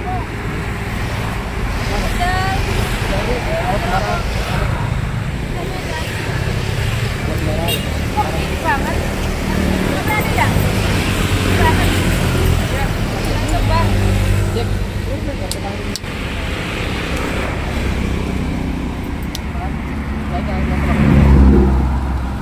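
Steady road-traffic noise from a busy road passing close by, with indistinct voices talking over it. The rumble swells louder for a moment shortly before the end.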